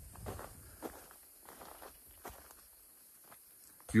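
Footsteps of a person walking over dry grass and soil, soft and irregular, thinning out after about two seconds.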